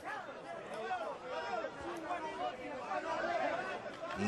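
Indistinct talking: several voices chattering, quieter than the commentary on either side.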